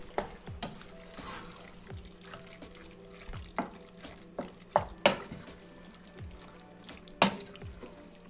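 Wooden spoon stirring a thick tomato sauce in a stainless steel pot, with a wet stirring sound and a few sharp knocks of the spoon against the pot, the loudest about five and seven seconds in.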